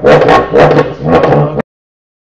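Cupa-cupa, the Salentine friction drum: a hand rubs a cane stick fixed through the skin stretched over a pot, giving a low pulsing drone in a steady rhythm of about two strokes a second. It stops abruptly about a second and a half in.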